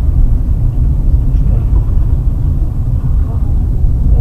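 Loud, rough low rumble of a car driving on a snow-packed road, with road and engine noise heard from inside the cabin.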